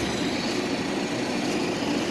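Steady outdoor background noise: an even hiss with no distinct events, of the kind given by distant traffic.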